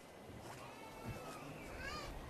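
Faint calls of a domestic animal: a drawn-out pitched cry about halfway in, then a short rising call near the end.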